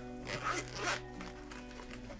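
A few short rasping swishes in the first second, from something being handled or pulled across the desk, with quiet background music running underneath.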